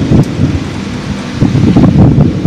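Wind buffeting the microphone: a loud low rumble that eases off briefly in the middle and picks up again near the end.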